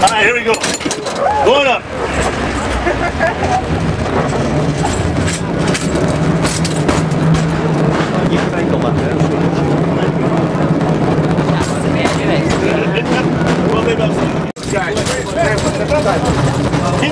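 San Francisco cable car running along its track: a steady rumble with a low hum held under it, and passengers' voices over it at first. The sound cuts out for an instant near the end.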